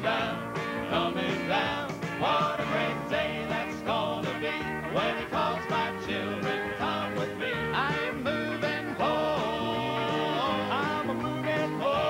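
Southern gospel band playing an instrumental break, guitars and drums keeping a steady beat, with notes that slide up in pitch. Sustained chords take over about three quarters of the way through.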